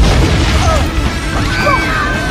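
A golf cart blowing up: a sudden explosion boom at the very start, followed by a deep rumble that carries on, over music.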